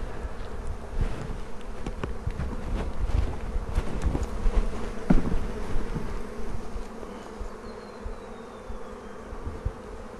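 A colony of European honeybees humming steadily over an opened hive box, with a few light knocks from the wooden frames being handled.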